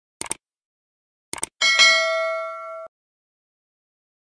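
Sound effects for a subscribe-button animation. There is a quick double mouse click, then another double click about a second later, then a bright notification-bell ding that rings for about a second and cuts off abruptly.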